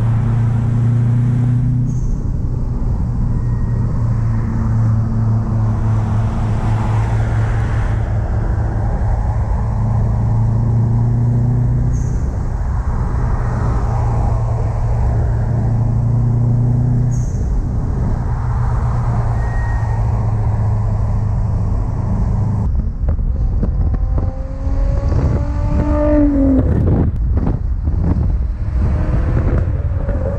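Car engines droning steadily at motorway cruising speed. About three-quarters of the way through the sound changes, and an engine revs up and falls back a couple of times.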